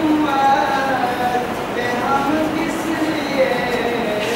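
A single voice with long held notes that slide from pitch to pitch, like sung or chanted recitation, over a steady background hiss.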